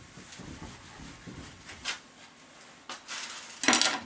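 Whiteboard being wiped clean with an eraser, a soft rubbing, followed by a couple of sharp clicks and a louder brief scrape near the end.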